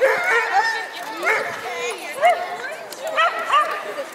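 A dog barking and yipping excitedly in several short bursts, with voices underneath.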